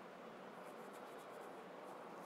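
Quiet room tone: steady low hiss, with a quick run of faint, soft scratching strokes from about half a second to a second and a half in, and one more near the end.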